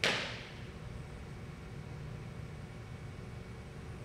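A single sharp swish, a martial-arts uniform snapping as the last movement of the form returns to ready stance, fading within half a second. A low steady room hum follows.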